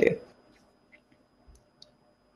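A woman's speech trails off right at the start, followed by a pause holding a few faint, brief clicks.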